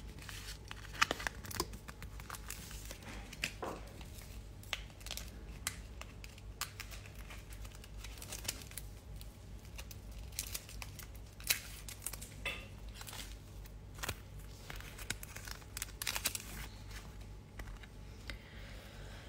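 Faint handling noises from nail-stamping tools: scattered light clicks and taps with brief crinkling rustles, as a metal stamping plate and its paper-and-plastic sleeve are moved about on the table.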